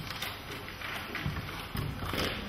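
Low room noise in a hall during a pause in speech, with a few faint knocks.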